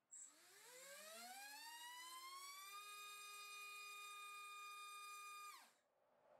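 MAD Racer 2306-2750KV brushless motor spinning a three-blade 5-inch prop on a thrust stand, run from standstill up to full throttle on 3S. The whine rises steadily in pitch for about three seconds, holds high and steady, then stops abruptly with a quick downward fall shortly before the end.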